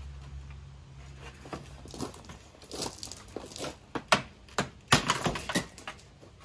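Plastic retaining clips of a Honda CR-V's front center grille snapping loose as the grille is pulled off by hand: a run of sharp plastic clicks and rattles, with the two loudest snaps about four and five seconds in. A low steady hum in the background stops about two seconds in.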